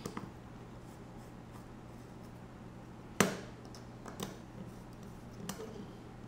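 Hand hex driver tightening the top-plate screws on a carbon-fibre drone frame: small handling clicks and taps, with one sharp knock about three seconds in and lighter ones about a second and two seconds later.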